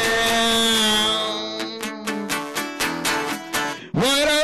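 Song with guitar accompaniment: a long held sung note that ends about a second and a half in, followed by rhythmic strummed guitar chords.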